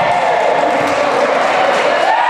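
Volleyball team shouting and cheering together in celebration after winning a point, several voices held in long overlapping shouts.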